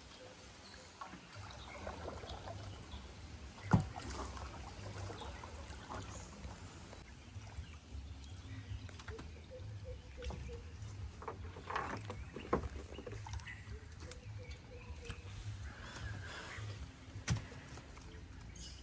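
A fishing net being hauled by hand into a wooden dugout outrigger canoe, with rustling handling noise and a few sharp knocks, the loudest about four seconds in.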